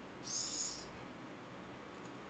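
A single short, high-pitched chirp lasting about half a second, over faint room tone.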